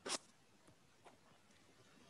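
Near silence: a brief rustle right at the start, then two faint ticks about a second in.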